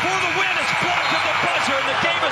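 Basketball arena's end-of-game horn sounding one steady, high note for nearly two seconds, cutting off just before the end: the game clock has run out. Dense arena crowd noise runs underneath.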